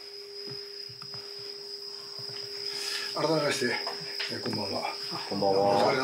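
Insects trilling steadily on one high note, over a low steady hum. A man's voice starts speaking about halfway through and is the loudest sound.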